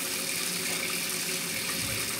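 Kitchen faucet running a steady stream of water into the sink, a hot-water draw that sets the combi boiler firing.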